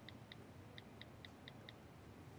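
Faint, quick clicks of a smartphone's keypad as someone types on it, about four to five taps a second.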